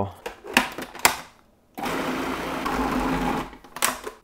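A few sharp handling clicks, then a small countertop food processor runs steadily for about a second and a half, grinding lean ground beef with coconut oil into a sticky paste, and stops. Another click near the end.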